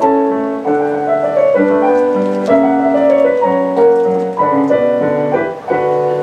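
Piano music: sustained chords, moving to a new chord about every half second to a second.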